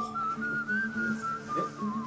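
Background music with a whistled tune: a single wavering line that rises and dips, over a steady low accompaniment.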